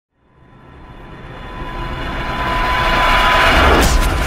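Cinematic intro sound effect: a whooshing riser that swells steadily louder out of silence, with a faint steady tone under it.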